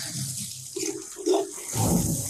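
Running water, a steady hiss, with two short low tones about a second in.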